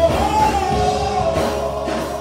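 Church praise team singing a gospel song at microphones with instrumental accompaniment, sustained melodic vocal lines over a steady backing.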